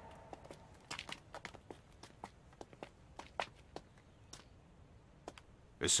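Footsteps: a run of soft, irregular taps that thin out after about four seconds.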